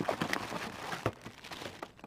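Plastic bags crinkling and rustling with an irregular crackle as a hand rummages among bagged accessories in a cardboard box and lifts out a bagged power supply.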